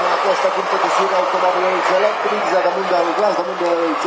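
A man commentating the race in French, talking steadily over the circuit's loudspeakers.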